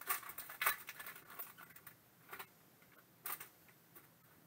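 Foil trading-card pack wrapper crinkling as it is torn open and handled, in quick crisp crackles over the first two seconds, then two short rustles of cards being handled, the second near the end.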